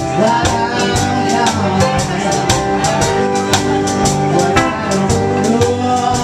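A live band playing a country-flavoured song, with guitar and a steady percussion beat.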